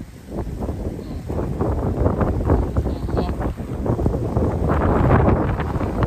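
Wind buffeting the microphone: a rumbling, gusting noise that grows louder over the last couple of seconds.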